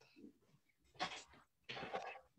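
A young child's short loud cries, heard through a video call: a soft sound just after the start, then a yell about a second in and another near the end.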